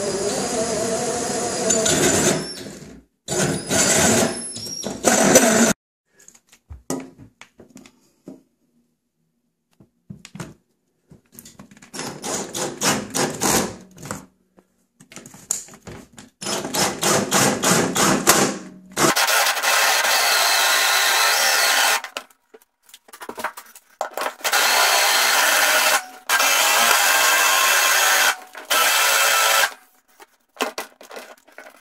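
Power drill cutting: first a hole saw grinding through a white plastic part, then a flat toothed boring bit, Forstner-type, chewing a hole into a wooden countertop. The drill runs in stop-start bursts with short pauses, with long steady runs near the end.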